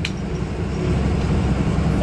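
A bus's engine and road noise heard from inside the cabin while it drives: a steady low rumble with an even hiss above it. A short click comes right at the start.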